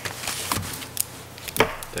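Handling noise on a meeting table picked up by table microphones: a few sharp knocks about half a second apart with rustling, the loudest knock just after one and a half seconds.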